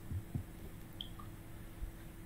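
A pause in speech with faint room tone: a steady low hum and a few soft, dull low thumps.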